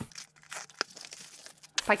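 A cardboard parcel being cut open with a utility knife and handled. There is quiet rustling and crinkling of tape and packaging, with one sharp click a little under a second in.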